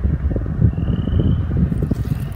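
Wind buffeting the microphone: a loud, irregular low rumble with a crackly texture.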